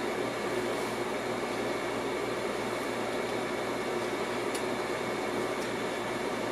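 Steady background hum and hiss, like a fan or air-conditioning unit running, with a couple of faint light clicks about one second and four and a half seconds in.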